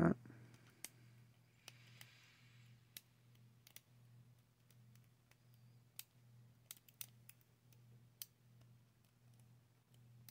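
Faint, irregular clicks of a lock pick working the pin stack inside a brass lock cylinder held under tension, as the picker feels for a binding pin that won't set. A steady low hum runs underneath.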